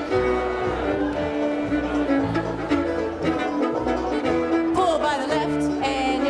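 Live contra dance band playing a fiddle-led dance tune, with a steady bouncing beat in the low notes underneath.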